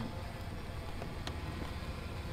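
Steady low rumble of a car idling, heard from inside the cabin, with one faint click a little over a second in.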